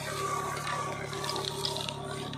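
Tractor engine running steadily with the turmeric digger, a continuous even hum, with a few faint ticks over it.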